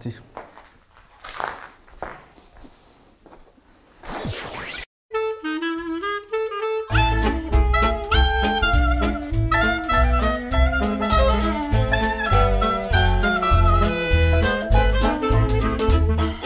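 A whoosh at about four seconds, then background music: a short melodic phrase, followed from about seven seconds by an upbeat swing-style tune with horns over a steady bass beat.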